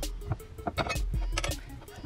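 Quiet background music with scattered light clicks and taps of a metal fork against a plate as microwaved potatoes are turned over.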